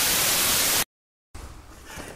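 Television static sound effect: a loud, even hiss that cuts off suddenly a little under a second in. After half a second of dead silence, faint room tone follows.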